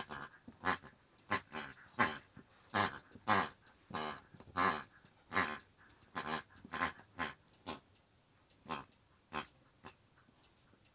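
A plush hippo squeaky toy squeaking over and over as a German Shepherd chews on it, in quick irregular squeaks that thin out near the end.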